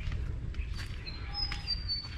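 A bird's thin, high whistled call, drawn out and stepping slightly down in pitch, starting about a second in, over steady low background rumble.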